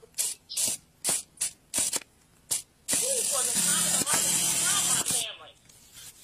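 A string of short hissing bursts, then a loud steady hiss lasting about two seconds with a voice running underneath it.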